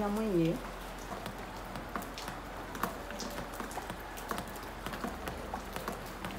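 A woman's voice briefly at the start, then a scatter of light, irregular ticks and taps over a low steady background hiss.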